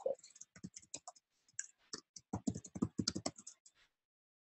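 Typing on a computer keyboard: a quiet run of quick, irregular key clicks that comes thicker in the second half.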